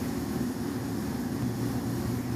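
A steady low mechanical hum from a running motor-driven machine, holding an even drone throughout with no change.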